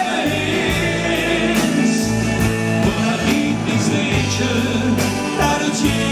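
Live band playing a Kölsch-language pop song with singing over a steady drum beat.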